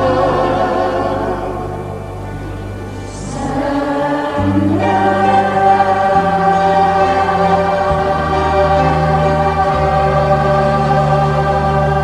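Church choir singing an Arabic Easter hymn in sustained chords over long held low notes. The sound dips about two seconds in, then swells back on a new held chord about four seconds in.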